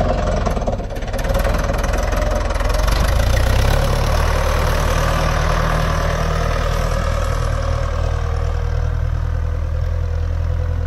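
Torpedo tractor's diesel engine running steadily under load as it pulls a three-metre field roller over tilled soil. The engine note grows a little fuller about three and a half seconds in, then holds steady.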